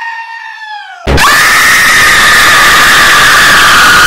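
A goat's bleat trails off, falling in pitch; about a second in, a sudden, very loud, harsh jumpscare scream cuts in and holds, its pitch sinking slowly.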